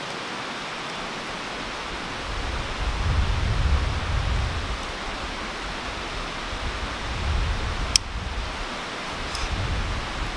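Steady rush of a mountain stream, with low rumbles swelling from about two to five seconds in and again just before a single sharp click near the end.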